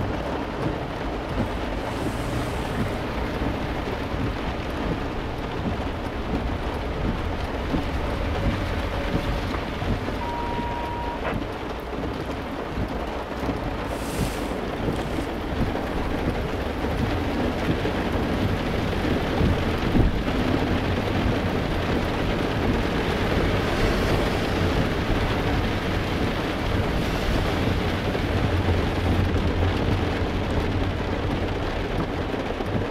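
Steady rain falling on a vehicle's roof, heard from inside the cab, over a low steady hum. A single short beep sounds about ten seconds in.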